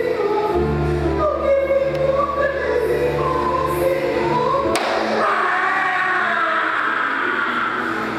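Dramatic music with a choir singing sustained lines over a held low bass note. A little past halfway, a single sharp knock sounds and the bass drops out, leaving the choir.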